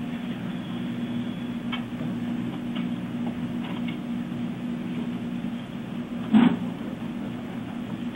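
Steady low hum and hiss of an open launch-control voice line, with one short burst about six and a half seconds in.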